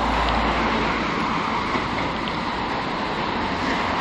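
Steady city-street traffic noise, with a deeper rumble during the first second.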